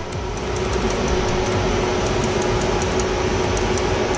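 Air blown by mouth through a solenoid valve to test whether it opens when its coil is powered: a steady rushing hiss, with a steady hum underneath.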